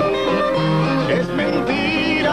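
Bolero played by a guitar trio: plucked guitars play a short fill between the singers' phrases.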